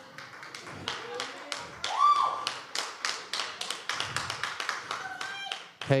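Scattered hand claps from a small congregation, uneven and a few each second, with a short call from one voice about two seconds in.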